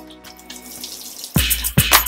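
Kitchen tap running into a stainless steel sink while hands are washed under it. About a second and a half in, background music with a steady drum beat starts and becomes the loudest sound.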